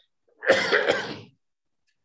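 A single harsh cough from a person, picked up through a video-call microphone, starting about half a second in and lasting under a second.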